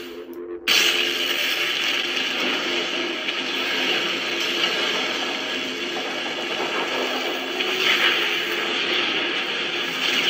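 Lightsaber sound board playing the Elder Wand sound font through the hilt's speaker: a steady, whirring hum. It cuts out briefly about half a second in, then comes back, with a couple of brighter swells near the end.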